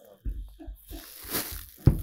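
Plastic bag rustling and crinkling as pomegranates are taken out of it, with a sharp thump near the end, like a pomegranate set down on a table.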